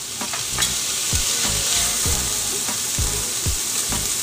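Chopped red onions, fennel seeds and fennel fronds sizzling in hot olive oil in a skillet: a steady frying hiss with a few small crackles about half a second in.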